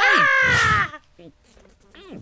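A squawky, cartoon-magpie voice call, sliding down in pitch and breaking off about a second in.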